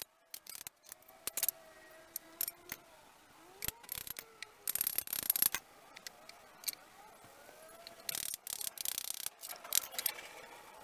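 Jack wood sticks being handled and fitted together by hand: light wooden knocks and clicks, thickest around five seconds in and again near nine seconds.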